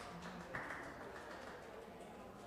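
Faint light taps and clicks, with a soft knock about half a second in that fades away.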